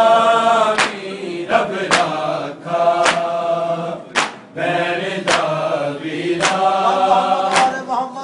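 A group of men chanting a Punjabi noha in chorus, with matam chest-beating slaps keeping an even beat about once a second.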